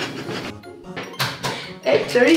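Background music, with a sharp crack at the start and a few short crisp noises a little over a second in: eggs being cracked against a bowl.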